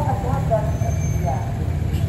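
Steady low rumble of street traffic, with brief snatches of people talking at the start and about a second in.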